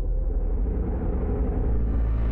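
Deep cinematic rumble from a TV sports channel's closing ident, with music swelling in near the end.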